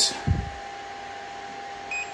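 A 3D printer's touchscreen gives one short beep near the end as it is tapped, over the powered printer's steady high whine. A low thump comes just after the start.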